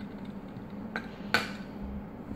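Two small clicks about a second in, a light tap and then a sharper one, as a metal compass is pressed against bare circuit wires on a wooden tabletop. A faint steady hum runs underneath.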